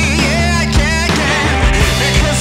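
Rock music from a full band, with regular drum hits under sustained bass notes and a melodic line bending up and down in pitch.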